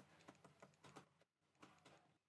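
Near silence with a few faint, irregular ticks and taps from a stylus writing on a pen tablet.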